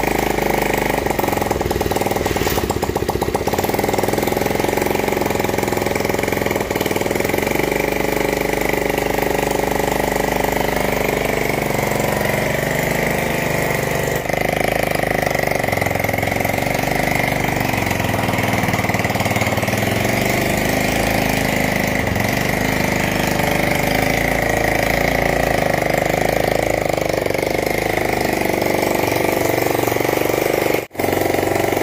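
Small engine of a homemade 4x4 mini jeep running steadily at idle.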